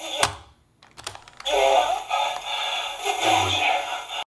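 A sharp click, then a hissy, lo-fi man's voice played back from a small handheld recorder: a recorded confession saying someone is dead and not breathing.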